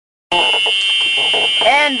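A loud, steady high-pitched tone, like a buzzer, starts abruptly a moment in and holds without pulsing, with a voice starting near the end.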